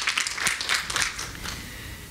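Audience applause, many hands clapping, thinning and dying away over the second half.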